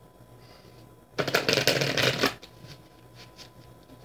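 A tarot deck being shuffled by hand. A dense, rapid rush of card flutter starts just over a second in and lasts about a second, followed by a few light taps of the cards.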